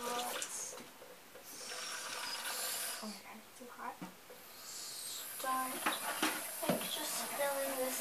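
Water running from a kitchen faucet into a plastic cup held under the stream to rinse it; the hiss of the water comes in strongest about two seconds in and again through the second half.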